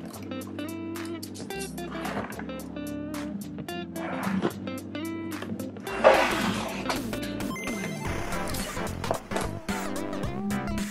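Backing music with a steady beat and held bass notes. About six seconds in there is a brief, louder noisy swish.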